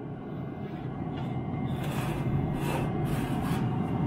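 Weber SmokeFire pellet grill running with its lid open at 450 degrees: a steady whoosh of fan and fire with a low hum, growing slightly louder.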